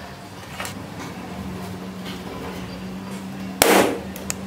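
A rubber balloon bursting over a candle flame: one loud, sudden pop near the end.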